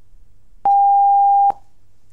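A single loud, steady electronic beep of just under a second, switching on and off abruptly, as the reporter's live audio link drops out: the sign of a lost connection. A faint line hum sits under it.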